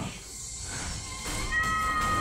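A cartoon character's long, high-pitched cry from the episode soundtrack. It starts about a second in, rises briefly, then holds on one pitch.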